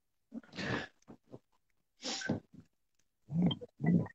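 A girl breathing in and out audibly: two long breathy exhales, then short voiced sighs near the end.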